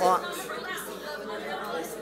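Speech only: a man speaks one word of a prayer, then quieter talk follows in a large room.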